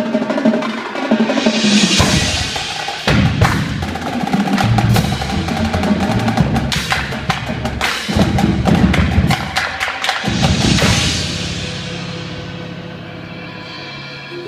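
Indoor percussion ensemble playing: a marching battery of snare, tenor and bass drums with front-ensemble marimbas, vibraphones and cymbals. A loud passage of rapid drum strokes and bass-drum hits starts about two seconds in, with cymbal crashes near the start and about ten seconds in, then eases into sustained mallet-keyboard chords near the end.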